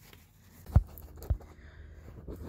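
Handling noise in a workshop: two dull low thumps about half a second apart, over faint rustling.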